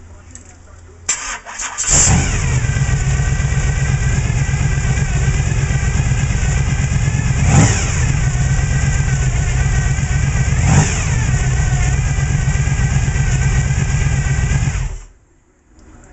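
Low-compression Chevrolet 454 big-block V8 on an engine run stand, running through open headers. It catches about two seconds in after a couple of sputters, runs loud and steady with two brief throttle blips, then is shut off suddenly near the end.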